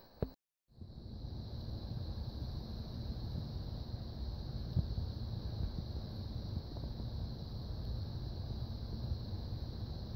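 Steady low rumbling background noise with a faint high-pitched whine, and one faint click about five seconds in.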